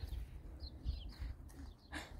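A few faint, short, high-pitched animal chirps about half a second to a second in, over a low uneven rumble.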